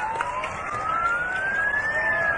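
Ambulance siren in a slow wail, its pitch climbing steadily the whole way, over the noise of a large crowd.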